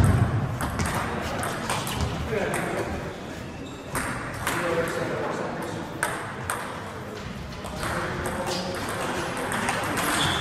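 Table tennis ball clicking off rubber bats and bouncing on the table during play, with people's voices chattering in the hall.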